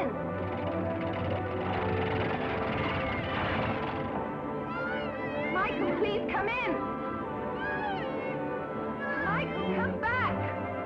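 Background film score playing steadily. In the second half, several short, high, arching cries sound over it.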